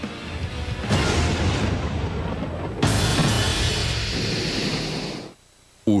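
Broadcast music sting with two sudden hits, the first about a second in and a brighter one near the three-second mark, ringing on and then cutting away shortly before the end.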